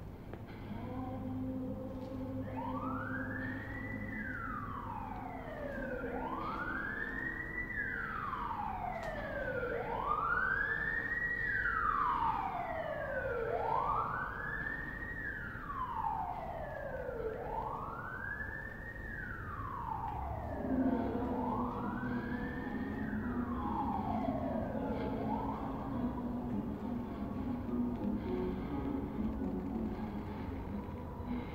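A wailing siren whose pitch climbs and falls slowly in six long cycles of about four seconds each, then stops near the end, over a steady low hum.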